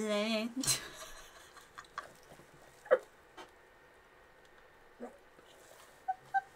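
A short wavering vocal sound at the start, then hushed, held-in laughter from two people, with a few brief faint snorts and breaths.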